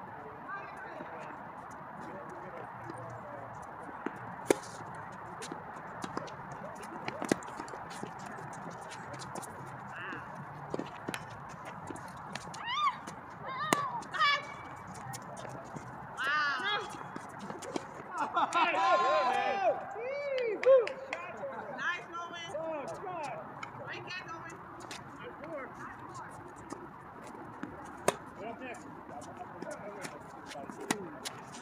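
Tennis balls hit by rackets and bouncing on an outdoor hard court, heard as sharp single pops every few seconds through a rally. People's voices call out for a few seconds near the middle.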